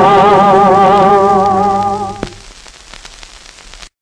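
An Armenian song played from an old 78 rpm record ends on a long held note with vibrato, which fades out about two seconds in. After a click, only the disc's crackling surface noise remains, and it cuts off just before the end.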